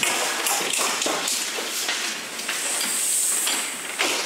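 Footsteps on a hard floor: a run of quick, uneven taps and knocks as someone walks away, with a brief hiss a few seconds in.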